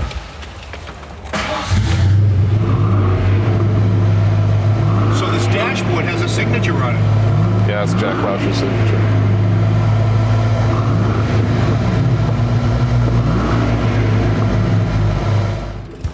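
The V8 of a 1994 Ford Mustang Cobra Indy 500 pace car starting about a second and a half in, then running with a loud, steady low rumble and a few rises and falls in pitch as it is revved, until the sound cuts off just before the end.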